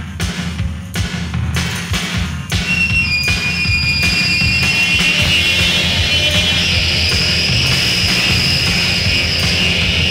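Instrumental intro of a noise-pop rock song: drums and bass pounding, joined about two and a half seconds in by high, screeching guitar feedback that builds and holds over them.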